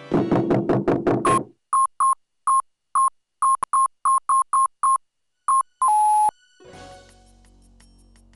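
Cartoon computer sound effects. A rapid burst of low electronic buzzing pulses comes first, then a string of short beeps at one pitch as an upload progress bar fills. About six seconds in, a longer beep steps down in pitch as the upload finishes, leaving only a faint background hum.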